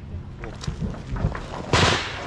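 Low voices, then a single loud burst of gunfire nearby about 1.7 seconds in, lasting about a third of a second.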